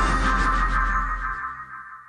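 Short electronic music sting with a deep bass underlay, loud at first and fading out over about two seconds: a TV programme's transition jingle leading into a filmed report.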